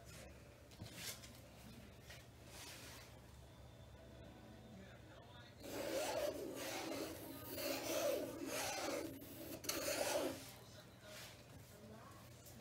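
A tool is dragged in several rubbing strokes across the wet acrylic paint on a stretched canvas, swiping the poured paint into a new pattern. The strokes start about halfway through and last about five seconds.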